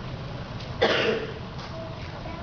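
A man coughs once, about a second in, a short rough burst over low room hum.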